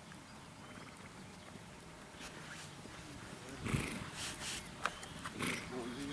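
Dressage horse trotting on a sand arena, faint at first, with several short, louder, irregular sounds from the horse in the second half.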